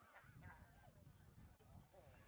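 Near silence: faint open-air ambience with a few faint, wavering distant calls.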